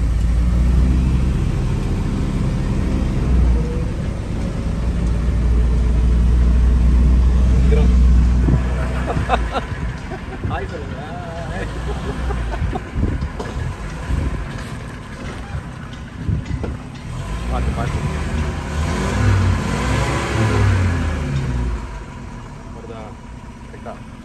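1949 Austin A40's 1.2-litre four-cylinder engine heard from inside the cabin, running loud and low as the car pulls away in first gear, easing off about nine seconds in.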